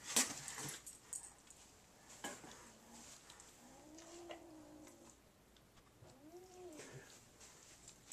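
A cat meowing: two long, drawn-out, yowling meows that rise and fall in pitch, the first starting about two seconds in and lasting over two seconds, the second shorter, about six seconds in.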